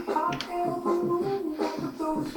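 Recorded music playing back through a small computer speaker: a melody over a beat with sharp snap-like clicks.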